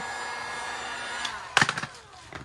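Handheld heat gun blowing steadily on vinyl wrap film, cutting out just over a second in, followed by a brief burst of crackling.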